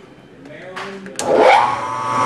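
A 1-1/8 inch drill bit in a milling machine bites into an aluminum box-tube drive rail about a second in, then cuts with a steady ringing tone and chatter as the quill is fed down to bore the bearing hole.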